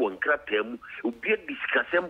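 Speech only: a man talking continuously over a telephone line, the voice narrow and thin.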